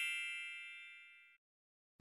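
Ringing tail of a bright, bell-like chime from the logo card's sound effect, with many high tones fading away over about a second.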